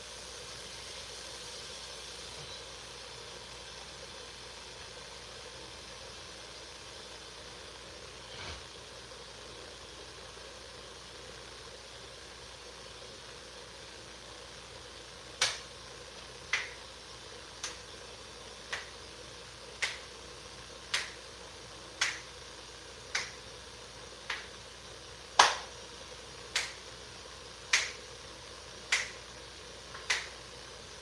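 Finger snaps in a slow, even beat of about one a second, starting about halfway through, over a faint steady hiss.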